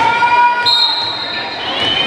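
Players and spectators calling out with drawn-out cheers in a reverberant gym, then a referee's whistle that starts suddenly about half a second in and holds one steady high note for about a second, the signal to serve.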